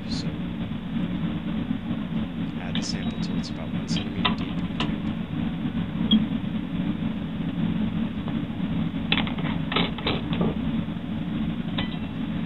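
A steady low hum, with scattered light clicks and taps a few seconds in and again near the end, the sounds of glassware being handled.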